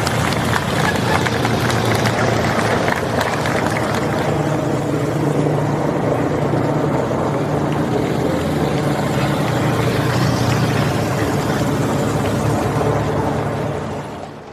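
Engines of a police motorcycle escort and a slow-moving hearse and cars passing close by, a steady engine hum, under a dense crackling noise from the roadside crowd. The sound drops away sharply at the end.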